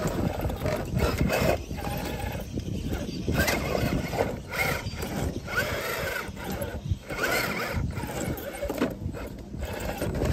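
RC rock crawler's electric motor and drivetrain whining in short rises and falls of pitch as it is throttled up a rock climb. Its tyres scrabble and knock on the stones in irregular clicks.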